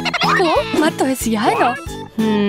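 A warbling, gobble-like vocal sound whose pitch slides up and down in quick turns, with a rapid trill at the start, over light background music.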